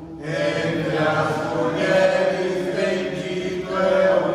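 A group of voices reciting a rosary prayer together in Portuguese, in a steady chant-like rhythm. It picks up after a brief dip at the start.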